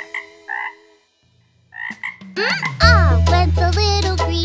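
A few short frog croaks in the first second, a pause, then another croak and a rising glide about two seconds in. After that, bouncy children's song music with a singing voice comes back in.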